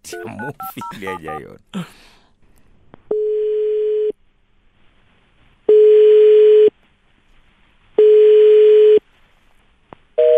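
Telephone keypad tones being dialled, followed by the ringback tone of an outgoing call: three one-second rings at one steady low pitch, a couple of seconds apart. The call is ringing unanswered at the other end.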